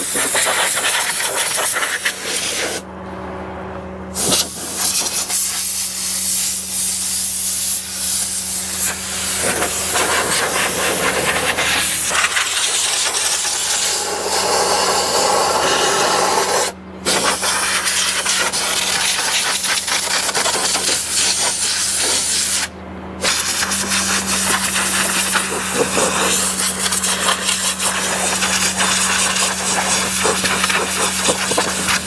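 Compressed-air blow gun blowing dirt out of a Bobcat skid steer's air-conditioning coils and plenums: a loud steady hiss of escaping air, stopped briefly three times as the trigger is let go. A faint steady low hum runs underneath.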